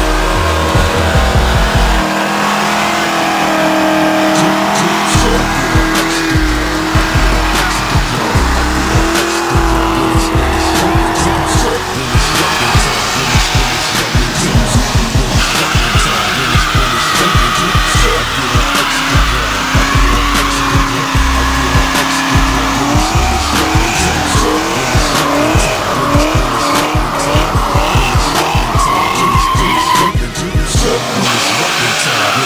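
Ford Mustang 5.0 V8 revving hard through burnouts, the rear tyres spinning and squealing, mixed with a background music track.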